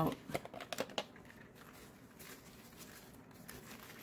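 Small cosmetic samples and their packaging being handled and taken out of a bag: a quick run of light clicks and taps in the first second, then only a few faint handling ticks.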